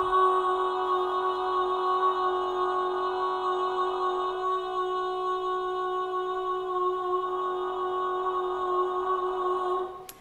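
A sustained sung voice note distorted by amplitude modulation, with three subharmonics added around its main partial, held at a steady pitch. The distortion setting changes about four seconds in, when some partials drop away, and changes back about seven seconds in. The sound stops just before the end.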